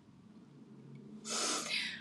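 A woman's sharp intake of breath, lasting under a second and starting a little over a second in, as she fights back tears.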